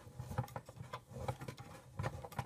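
Smooth-edge manual can opener working on a can's rim, giving a run of light, irregular clicks as its knob and cutting wheel are turned.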